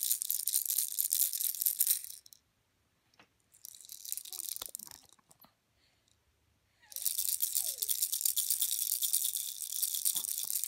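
Plastic baby rattle toy shaken in three spells: a couple of seconds of shaking, a short shake around four seconds in, then steady shaking from about seven seconds on, with near silence between.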